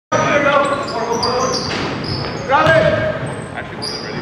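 Basketball game in a gymnasium with a hard court. Sneakers squeak in many short, high chirps, the ball bounces, and players shout, with a louder shout about two and a half seconds in, all echoing in the large hall.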